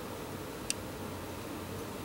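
Faint steady room hiss with one light click about two-thirds of a second in, from a hard plastic toy figure being turned in the hands.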